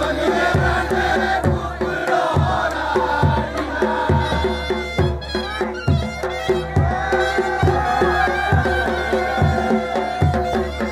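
Himachali Pahari folk dance music: a steady, evenly spaced drum beat under a wavering melody line, loud and continuous.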